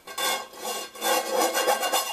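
A loud, rasping squeak of something rubbing close by, pitched and scratchy, with a rapid stuttering pulse in its second half.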